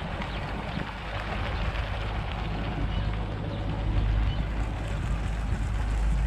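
Motorcycle taxi's engine running steadily underway, with wind rushing over the microphone; the sound grows gradually louder over the seconds.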